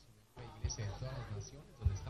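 A faint voice speaking, starting about a third of a second in, with two dull thumps a little over a second apart; the second thump is the loudest moment.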